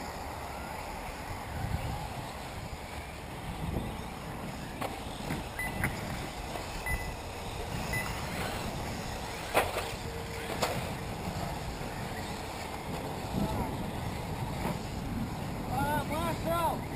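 1/8-scale electric off-road RC buggies running around a dirt race track, a steady mix of motor and tyre noise, with people talking in the background.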